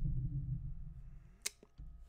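A low, muffled hum that fades away over the first second, then a single sharp click about a second and a half in.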